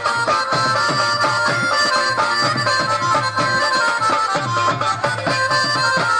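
Instrumental passage of a Saraiki folk song: a reedy melody line over a steady drum beat.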